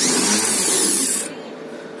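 Rebuilt Chevrolet starter motor running unloaded on a bench test, clamped in a vise, whirring like a drill, then cutting out about a second and a quarter in. The free spin shows that the rebuilt starter works.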